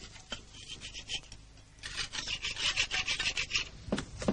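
Hand tool rasping on wood in quick back-and-forth strokes, about seven a second, with a few scattered strokes before the steady run starts about halfway through.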